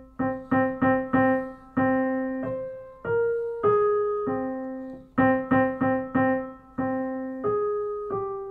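A short melody in a piano tone, one note at a time, opening with quick repeated notes on one pitch, moving up to a couple of higher notes, then returning to the repeated notes. It is a trial version of a melody built by rearranging short motives.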